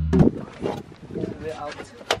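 One last drum strike over a steady low drone, which cut off suddenly a moment in, then faint voices talking.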